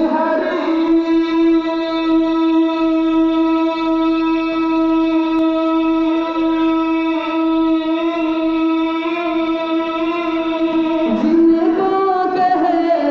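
A man's voice holding one long, steady sung note of a naat for about ten seconds, then moving into a new phrase near the end.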